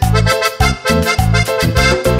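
Instrumental cumbia passage led by a piano accordion playing a busy melody over a bass line pulsing about four notes a second.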